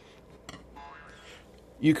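Quiet room tone with a faint click and a brief, faint pitched sound about a second in; a man starts speaking near the end.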